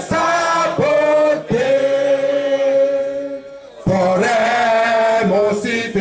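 A crowd singing a slow song together in unison, with one long held note in the middle and a short break before the singing picks up again.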